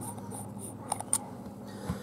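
Threaded copper button cap of a mechanical vape mod being unscrewed by hand: faint scraping of the threads with a few light clicks, the last one near the end.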